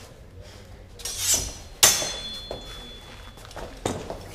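Steel longsword training blades clashing: a sharp metallic strike just before two seconds in that rings on briefly, and another short knock near the end.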